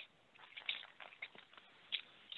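A flat paintbrush tapping paint onto a stretched canvas: a string of faint, irregular soft taps.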